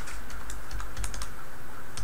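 Computer keyboard typing: a quick run of separate keystrokes spelling out a short word.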